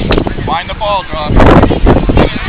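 Wind buffeting the microphone in heavy gusts, the strongest about one and a half seconds in, over distant calling voices from the field.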